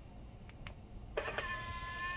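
Tesla's custom lock sound starting from the car's external speaker as the key fob locks the car: a few faint clicks, then a single steady, cat-like tone held for just under a second near the end.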